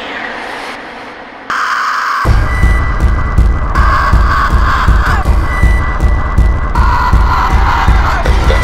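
Rawstyle hardstyle track. After a quieter lead-in, a loud synth lead jumps in just over a second in, and about two seconds in a heavy distorted kick drum and bass drop in, pounding in a fast, steady beat.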